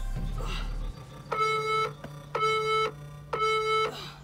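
Workout interval timer giving three short electronic countdown beeps about a second apart, each the same pitch, counting down the end of an exercise interval.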